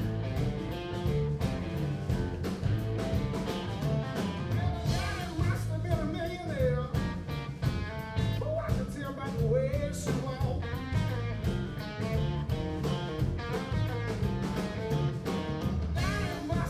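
Live blues-rock trio playing: electric guitar over bass guitar and a steady drum beat, with bent guitar notes now and then, heard from the audience in a hall.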